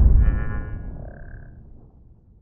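Cinematic logo-reveal sound effect dying away: a deep rumble that fades out over about two seconds, with a brief high shimmering ring in the first second.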